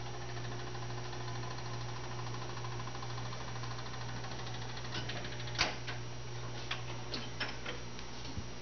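1970 Seeburg USC1 Bandshell jukebox's record-selection mechanism running after a selection is punched in: a steady motor whir with fine rapid ticking over a low hum. One louder click comes a little past halfway, with a few lighter clicks after it, as the mechanism cycles.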